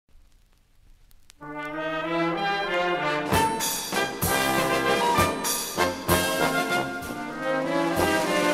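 Old-Berlin brass band music from a digitized vinyl LP. A faint lead-in with a couple of clicks gives way about a second and a half in to the band's held brass chord. Sharp percussion strokes join at about three seconds, and the tune gets under way.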